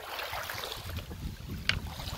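Small lake waves lapping on a pebble shore, with wind buffeting the microphone. A single sharp click comes near the end.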